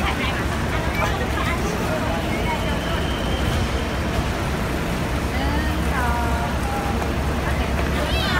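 Steady low rumble of buses idling at the kerb and passing traffic, with people's voices chatting over it.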